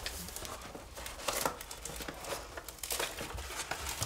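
Faint, irregular rustling and crinkling of packaging as the contents of a Roku 2 XS box are lifted out of its cardboard insert, with a few light scrapes and knocks.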